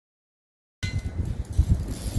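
Dead silence for the first part of a second at an edit cut, then wind buffeting the microphone in uneven low rumbling gusts.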